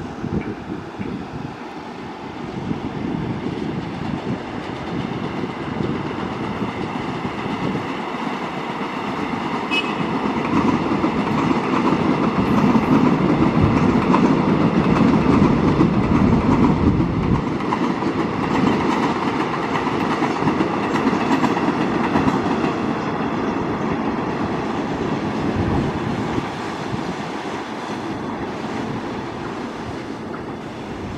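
Korail Line 4 electric multiple unit running past on the track, its wheel and running noise building to a peak about halfway through, then slowly fading.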